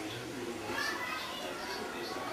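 Indistinct children's voices at play in the background, calling and chattering, over a steady ambient hum.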